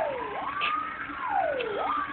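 Several fire engine sirens sounding at once and overlapping. One repeatedly sweeps down in pitch and jumps back up about every second and a half, while another rises and falls more slowly.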